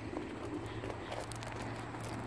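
Faint footsteps on gravel, a few soft crunches over a low steady hum.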